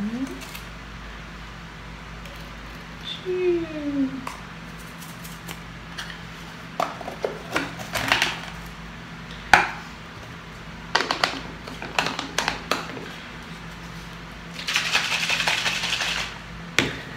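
Powdered infant formula being scooped from a tin into plastic baby bottles: scattered clicks and taps of the scoop against the tin and the bottle rims. In the last second and a half a bottle of formula is shaken hard, a steady sloshing rattle.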